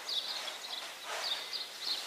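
Faint bird chirps: several short high calls spread through a pause, over a light outdoor hiss.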